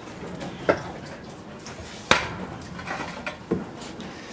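Three sharp knocks or clinks, the loudest about two seconds in, over a faint background.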